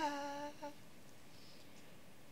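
A woman's unaccompanied singing voice holding the last note of a sung line, which fades out within about half a second. A brief pause with only faint room tone follows.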